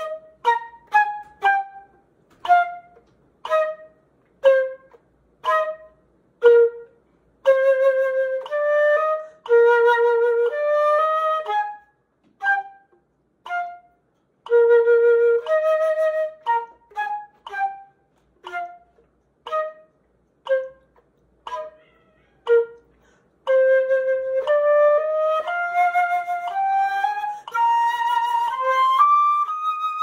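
Concert flute playing an etude: short detached staccato notes mixed with longer held notes, ending in a line of notes climbing step by step in pitch.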